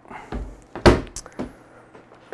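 A few knocks and one sharp thump, the loudest just under a second in: a magnetic PVC stand door panel being set back against a steel aquarium stand and snapping on.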